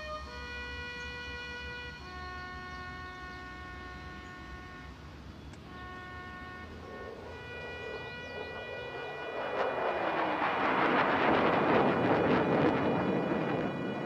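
Slow soundtrack music of long held woodwind notes, overtaken about seven seconds in by a loud rushing noise with a falling pitch that swells to a peak near the end and then fades: a jet aircraft passing over.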